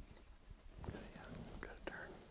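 A person whispering softly for about a second, starting near the middle, with a few small clicks mixed in.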